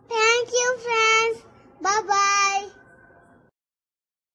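A child's high voice singing two short phrases of held notes. The second phrase trails off and fades out about three and a half seconds in.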